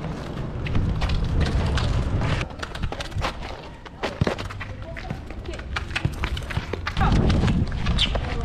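Children's football game on a hard outdoor court: sharp knocks of the ball being kicked and shoes scuffing the concrete, with children's voices in the background. Wind rumbles on the microphone for the first couple of seconds and again near the end.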